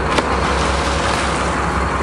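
Steady rushing water and boat engine hum as a marlin is released over the side, with one sharp splash just after the start.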